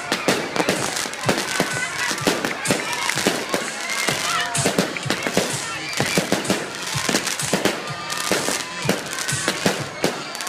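Fireworks and firecrackers going off: a dense, uneven run of sharp cracks and pops, several a second, over a steady hiss.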